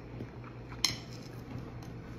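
A single sharp clink of cutlery against a dish a little before one second in, with a few fainter light ticks, over a steady low hum.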